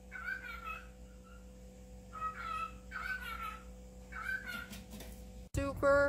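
A domestic cat meowing four times in short, high-pitched calls.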